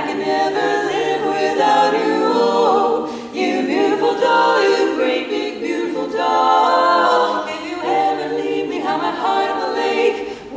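Female barbershop quartet singing a cappella in four-part harmony, in phrases with short breaths between them.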